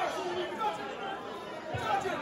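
Indistinct chatter of several voices talking at once in a large, echoing room, with no music playing.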